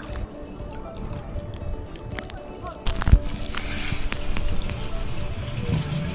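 Background music mixed with low rumbling ambience, with a sharp knock about three seconds in, after which it gets louder.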